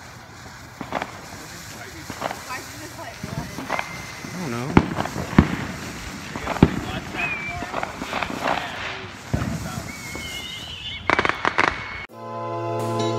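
Fountain firework hissing as it sprays sparks, with firecrackers and other fireworks going off around it: a scatter of sharp pops and bangs, the loudest a few in a row about halfway through.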